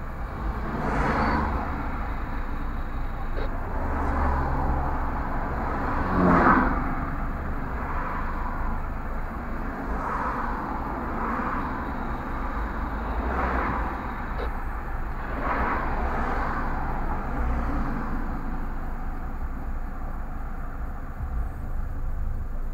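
Road traffic heard from inside a car stopped at a crossing: about eight vehicles go by one after another, each a swelling whoosh of tyres and engine. The loudest comes about six seconds in, with a falling pitch as it passes. Under them runs a steady low rumble.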